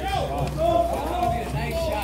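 People talking in the background, indistinct voices over a steady low hum.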